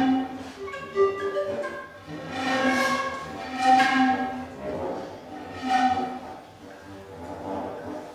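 Contemporary chamber music from recorder, panpipes, viola and accordion: held tones that swell and fade in several waves, growing quieter near the end.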